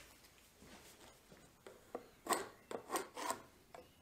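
A few short scraping strokes on plywood, starting about halfway through, as a tool or pencil is drawn over the wood.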